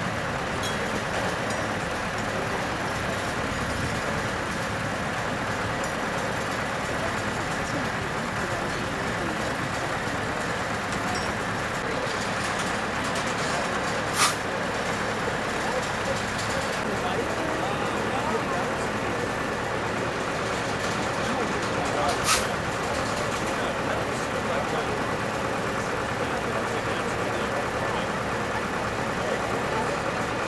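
Heavy modular transporter's diesel power unit running steadily, with faint voices in the background. Two short sharp clicks come about halfway and about three-quarters of the way through.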